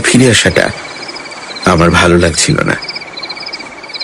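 Crickets chirping: a fast, even pulsing trill at one pitch that carries on between the lines of a radio drama. Two short stretches of a speaking voice lie over it, one at the start and one in the middle.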